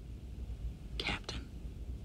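Low, steady hum of a starship's background ambience, with a short breathy sound about a second in.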